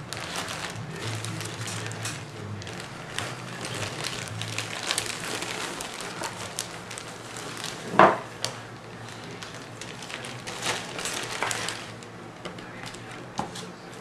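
Packaging rustling and crinkling as a parcel is opened and unpacked by hand, with many small crackles and clicks and one louder sharp sound about eight seconds in.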